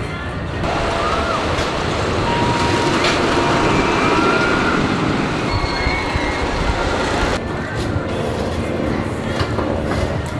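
D.H. Morgan steel hyper coaster train running down its track with a rising rumble that builds about a second in and is loudest mid-way, with riders screaming over it. The sound drops back somewhat near the end.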